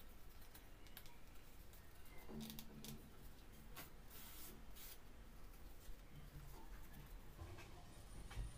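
Near silence with faint handling noises: scattered small clicks and two short rustles, about two and a half and four and a half seconds in, as cut fabric circles are worked by hand.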